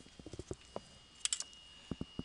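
A marker writing numbers on paper: a string of light taps and short scratchy strokes as each digit is drawn.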